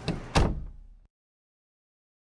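A door closing: a light knock, then a heavy thud that rings out briefly. The sound cuts off abruptly about a second in.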